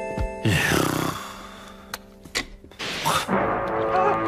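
Cartoon soundtrack of music and sound effects. About half a second in there is a falling glide and a burst of noise, and another falling glide comes near the end.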